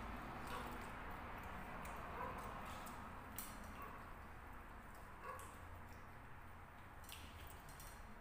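Faint sounds of a person eating: quiet chewing and a few soft clicks of a fork on a plate, over a low steady room hum.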